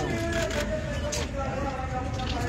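Indistinct voices of a gathered crowd talking, with a few sharp clicks.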